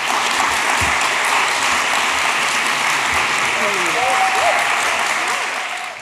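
Audience applauding steadily, with a voice or two rising over the clapping in the second half; the applause fades out at the very end.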